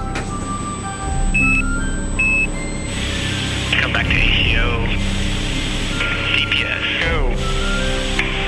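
Background music with sustained tones. From about three seconds in, tinny radio voices of a mission-control launch status poll come over the top of it. Two short high beeps come early on, about a second apart.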